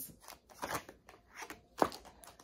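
Tarot cards being handled and drawn from the deck onto a cloth: a string of light clicks and card rustles, with a sharper click near the end.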